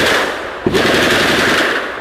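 Long bursts of rapid automatic gunfire at close range, a fresh burst starting just under a second in and tailing off near the end.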